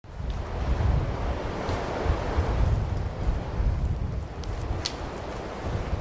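Wind blowing in gusts: a steady rushing noise with a low rumble that swells and falls.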